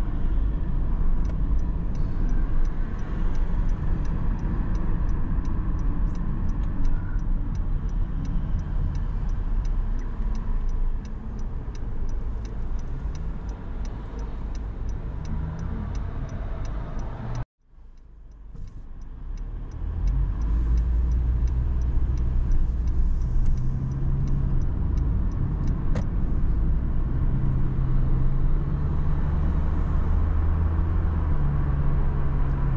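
Car cabin noise of engine and tyres while driving, with the turn indicator clicking in a quick regular rhythm for the first half as the car approaches a turn at an intersection. A little past halfway the sound drops out suddenly for a moment, then the engine and road rumble come back stronger as the car pulls away.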